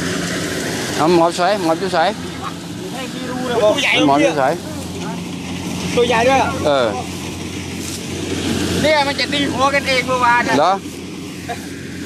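Voices talking in short stretches over the steady low hum of an idling engine.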